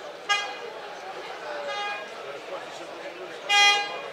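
Short toots of a tractor horn, three in quick succession, the last near the end the loudest and longest, over the steady babble of a large crowd.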